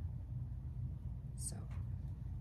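A steady low room hum, with one softly spoken word about a second and a half in.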